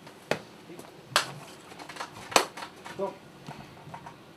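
A few sharp, isolated clicks, the three loudest about a second apart, over faint voices in a small room.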